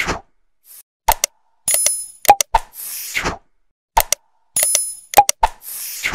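Animated like-and-subscribe sound effects: sharp mouse-click clicks, a ringing bell-like ding, a short pop and a whoosh. The set plays twice, about three seconds apart, with silence between the effects.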